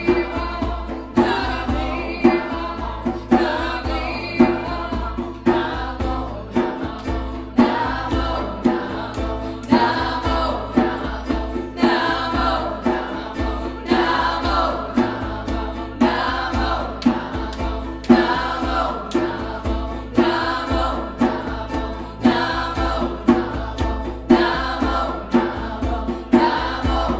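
Group kirtan chanting: many voices sing a mantra together over musical accompaniment, with a regular pulse about once a second.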